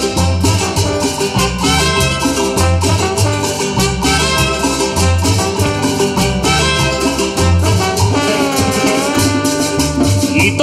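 Live cumbia band playing: trumpets and saxophone carry the melody over upright bass and percussion with a steady beat.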